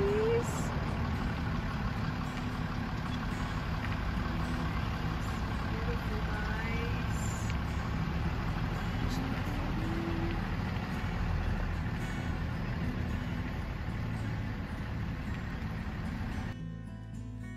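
Steady low rumble of wind buffeting the microphone, with faint distant voices heard now and then.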